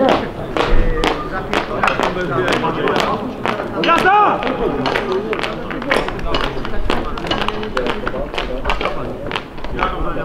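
Indistinct voices calling out without clear words, one louder shout about four seconds in, mixed with frequent short sharp knocks or claps.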